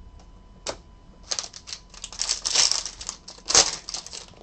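Foil wrapper of a 2023 Panini Prizm Football hobby pack crinkling and tearing open, with a sharp click about a second in. The loudest crackle comes near the end.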